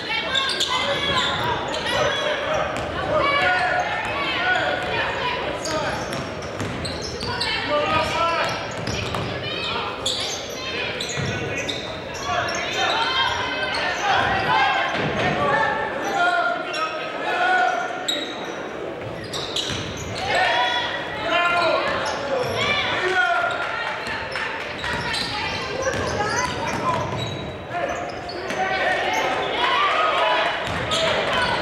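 Basketball game sounds in a large gym: a basketball dribbled on the hardwood court, with the voices of players and spectators calling and chattering throughout, all echoing in the hall.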